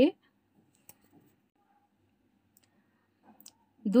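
Near silence between stretches of a woman's narration, broken only by a few faint, brief clicks.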